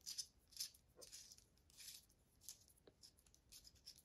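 Faint, irregular small metal clicks and rattles, about two a second, as an Allen key turns the clamp bolt of an aluminium bicycle handlebar phone mount and the metal parts are handled.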